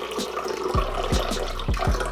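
Spring water poured from a plastic bottle into a glass: a steady splashing stream.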